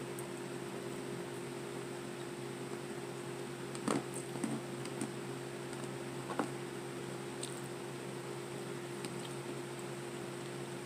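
Quiet eating sounds: chewing, and a few faint clicks of a plastic fork against a plastic takeout container, over a steady low hum.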